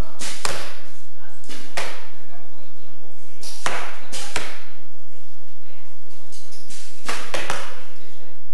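Archers' bows shooting one after another: about eight sharp string snaps of arrows being released at irregular intervals, some in quick pairs, each echoing briefly in the large hall.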